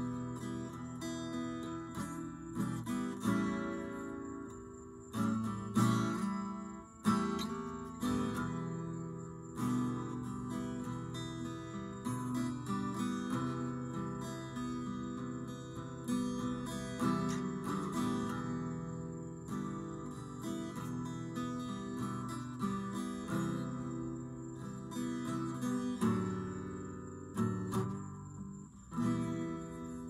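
Solo acoustic guitar played without singing: chords strummed over and over, each strum ringing on, with some notes picked between them.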